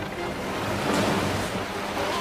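Sea water rushing and surging as a steady wash of noise, with faint low music underneath.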